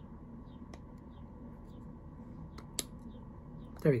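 A single sharp plastic click about three-quarters of the way through, as the cap comes off a plastic cosmetic serum tube, with faint handling ticks before it over quiet room tone.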